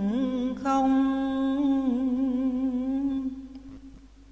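A man's voice chanting Vietnamese verse in the drawn-out ngâm style, holding one long vowel. The pitch slides up near the start, then holds a steady, slightly wavering note that fades away over the last second.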